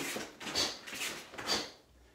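End of a kiai shout, then about four soft swishing sounds about half a second apart as a karateka in a gi steps and punches on rubber floor mats.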